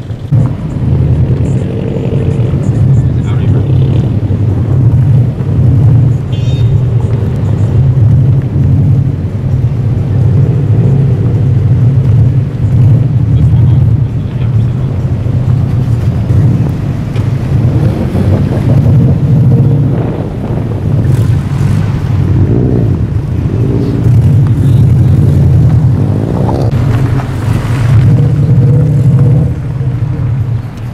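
Cars' engines and exhausts rumbling steadily and loudly as a line of cars drives slowly. Louder swells, as of cars accelerating past, come about two-thirds of the way in and again near the end.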